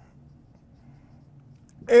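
Faint sound of a marker writing on a whiteboard.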